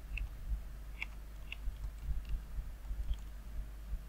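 Computer keyboard keys clicking a handful of times, faint and irregularly spaced, over a low steady hum.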